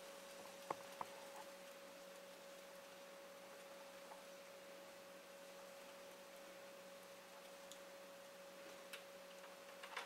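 Near silence: faint room tone with a steady low hum, and a couple of faint ticks about a second in.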